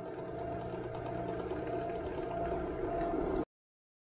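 Drill press running an end mill that is cutting a pocket in an aluminium workpiece clamped on a cross slide table: a steady machine hum with a faint whine. It cuts off suddenly about three and a half seconds in.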